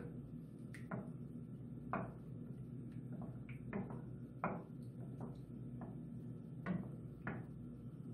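Wooden spatula stirring melted soap base in a stainless steel bowl, making faint, irregular light knocks and scrapes against the bowl, about a dozen in all, over a steady low hum.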